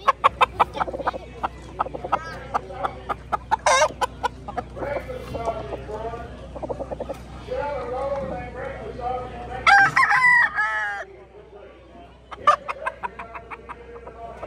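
Chickens clucking in a busy run of short calls, with a rooster crowing once loudly about ten seconds in.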